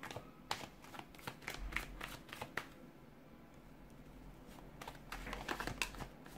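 A deck of tarot cards shuffled by hand: a run of quick card clicks and rustles that thins out about three seconds in and picks up again near the end.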